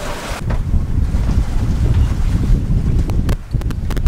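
Wind buffeting the microphone aboard a sailboat at sea: a loud, gusting low rumble, with a few sharp clicks near the end.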